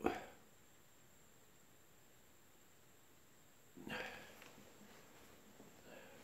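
Quiet room tone broken by one sharp handling knock at the start. About four seconds in there is a short, breathy sound.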